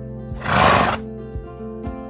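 Background acoustic guitar music with plucked notes, cut across about half a second in by a loud, brief, rough horse whinny lasting about half a second.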